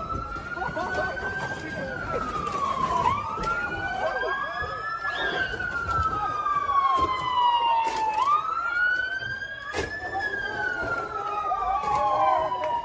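A police siren wailing in slow sweeps: a quick rise, then a long fall, repeating every few seconds. Under it, a crowd shouts in scattered voices, and a few sharp bangs stand out.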